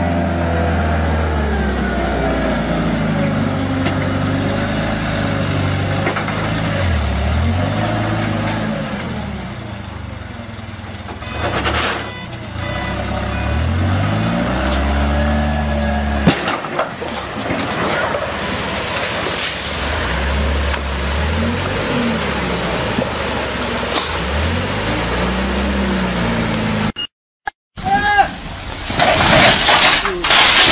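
Toyota LPG forklift engine running and revving up and down again and again, its pitch rising and falling in swells every couple of seconds, with a few sharp knocks along the way. Near the end it cuts off and a louder, harsher noise takes over.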